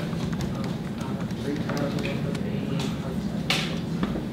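Classroom room tone: a steady low hum with faint, quiet speech from a student partway through, and one short sharp hiss about three and a half seconds in.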